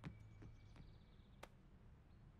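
Near silence, with a few faint, brief clicks.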